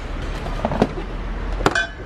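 Shopping bags and glass bottles being handled as they are packed into a car, with one sharp glassy clink near the end, over a low steady hum.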